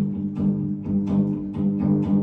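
Two electric guitars played live in an instrumental passage: sustained, ringing chords with notes picked in an even rhythm about twice a second.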